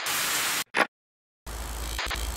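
TV-static sound effect, broken into bursts: a hiss of static for about half a second, a brief crackle, a short silence, then the static hiss cuts back in with a low hum beneath it.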